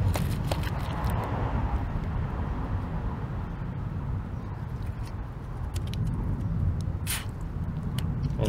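Fuel pressure bleeding out of a Volvo fuel rail's valve as it is held down with a screwdriver under a plastic cover: a hiss that fades away over about three seconds as the rail depressurises. A brief sharp click or crinkle comes near the end, over a steady low rumble.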